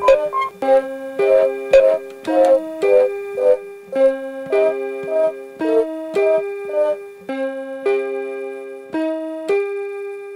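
Background music: a melody on a piano-like keyboard, held notes changing about once or twice a second.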